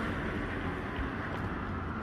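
Steady city-street background noise: an even, low rumble of distant traffic with no distinct events.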